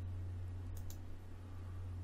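A computer mouse clicking faintly, once as a quick press and release about three quarters of a second in, over a steady low hum.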